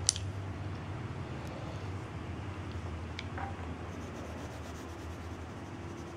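Graphite pencil drawing on sketchbook paper, with faint scratching strokes and a few light taps over a steady low hum; a sharp click comes right at the start.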